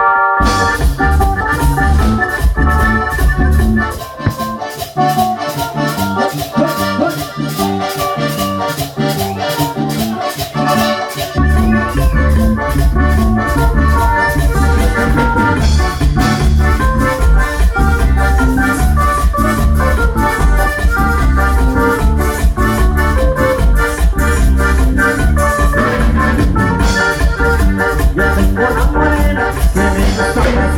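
Live grupero band playing a dance tune, with accordion and keyboard carrying the melody over electric bass, guitar and drums. The bass and drums come in fully about eleven seconds in, with a steady beat.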